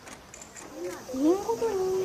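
A drawn-out voice starting about a second in, its pitch gliding up, holding and then falling.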